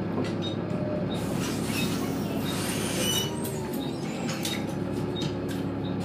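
A Volvo B7TL double-decker bus's six-cylinder diesel engine idling steadily, heard from inside the lower deck. Between about one and three seconds in, a louder hissing rush with a brief high squeal rides over it.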